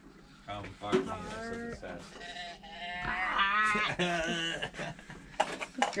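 Tip-over doe bleat can call sounding a drawn-out, wavering bleat that wobbles in pitch, goat-like, loudest about three seconds in.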